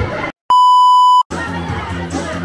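A single loud, steady, high-pitched electronic beep lasting under a second, with a brief dropout to silence just before and after it. It cuts off sharply, and music with crowd noise returns.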